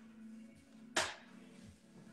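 A single sharp click about a second in, a hard object tapping, over a faint steady low hum.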